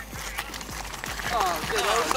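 A man's voice, faint and thin, coming from a smartphone on loudspeaker during a call, over light clicks from the bike on gravel.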